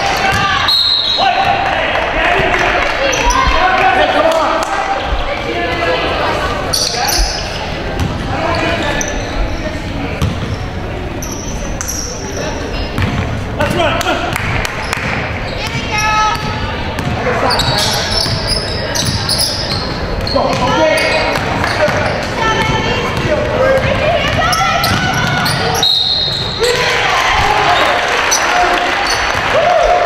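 A basketball being dribbled on a hardwood gym floor, with the voices of players, coaches and spectators echoing through the large gymnasium.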